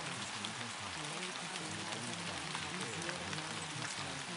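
Steady rain-like hiss scattered with small drop ticks, with a low, muffled spoken voice underneath: the buried affirmations of a subliminal track.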